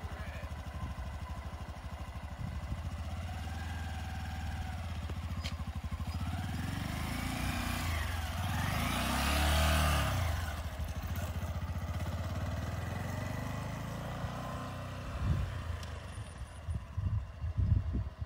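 A motorcycle engine running at low speed in a slow, steady putter as the bike rides a tight slow-speed course. It grows louder as the bike passes close about halfway through, then fades as it rides away.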